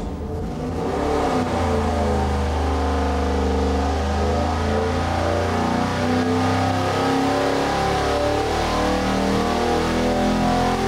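A supercharged 427 cubic inch LSX V8, fitted with a Magnuson supercharger, running hard on an engine dynamometer during a full-throttle pull from 3,000 to 7,300 rpm. The engine comes in within the first second and stays loud and steady.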